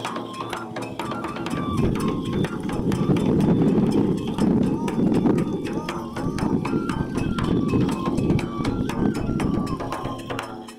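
Kagura music: a taiko drum struck in quick, steady strokes under a high flute melody, joined through the middle by a loud chorus of voices chanting together.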